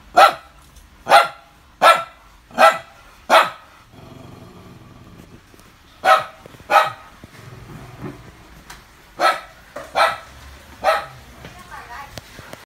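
Small dog barking in bursts: five barks in quick succession about three-quarters of a second apart, then two, then three more.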